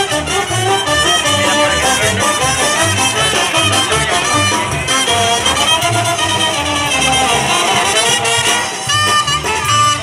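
Lively Latin carnival dance music from a band with trumpets and brass over a steady beat, accompanying the huehue dancers.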